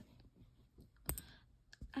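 Plastic buttons clicking in a metal tin as they are picked through: one sharp click about a second in, then a couple of fainter ticks near the end.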